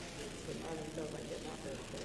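Indistinct murmur of voices, too low to make out words, over a steady low hum; the voices come up about half a second in.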